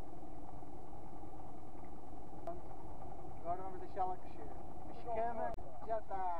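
Short voiced calls, twice, about three and a half and five seconds in, over a steady low hum.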